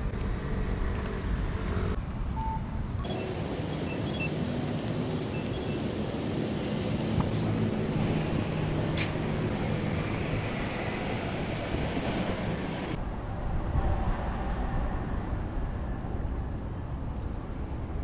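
Street ambience of road traffic passing, with a low rumble of wind on the microphone.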